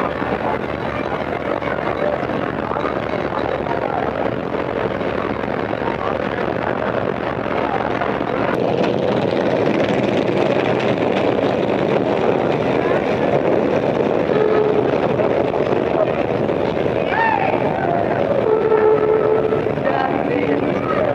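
Busy city street ambience on an early sound-film recording: a crowd of voices talking over a steady wash of street and traffic noise, with a few short pitched calls near the end.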